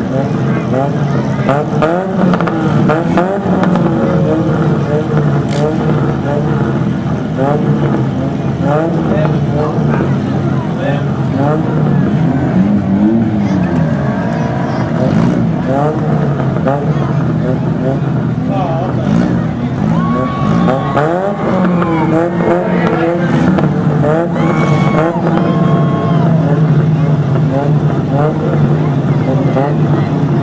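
Several demolition-derby compact cars' engines idling and revving at once, their pitches rising and falling over each other.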